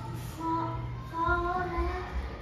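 A child's voice holding several long, steady, sung-like notes rather than clear words.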